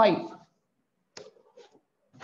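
A woman's voice finishing a spoken word, then, about a second in, a faint sharp click followed by a few softer taps.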